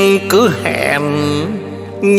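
Instrumental passage of a Vietnamese bolero band led by a đàn tranh zither, its melody notes sliding and bending up and down over steady held chords.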